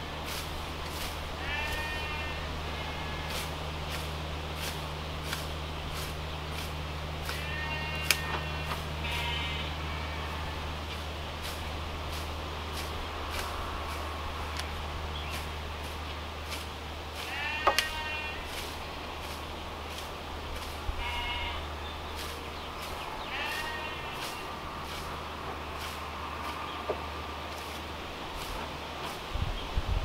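Farm animals bleating, about half a dozen short wavering calls a few seconds apart, over a run of short sharp clicks from a small hand scythe cutting grass.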